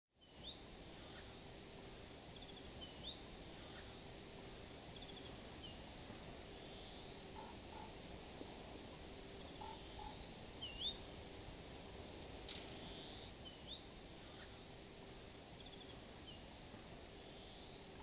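Faint outdoor birdsong: a small bird repeating short phrases of chirps and rising whistles every few seconds over low, steady background noise.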